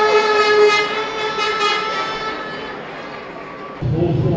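A horn held on one steady note over crowd noise, fading away over the last couple of seconds.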